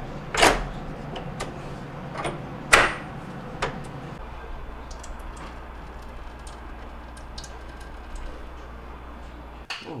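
A plastic kick panel is slid and snapped onto the base of a refrigerator, giving a few knocks and clicks, the loudest about three seconds in. After that comes a steady low hum with a faint hiss as water runs from the refrigerator's door dispenser into a plastic pitcher.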